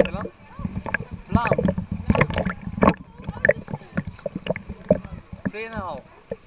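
Pool water sloshing and splashing against a camera held at the water's surface, with people's voices over it, including a long high-pitched call that rises and falls near the end.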